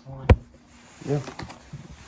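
A single sharp tap close to the microphone about a third of a second in, as of a hand knocking against the recording phone, with a boy's brief 'yeah' around a second in.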